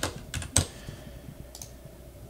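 A few separate clicks of a computer keyboard and mouse, the loudest about half a second in, as code is run and submitted.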